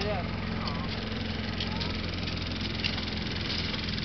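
An engine running steadily at a distance, a low, even drone, with faint far-off voices over it.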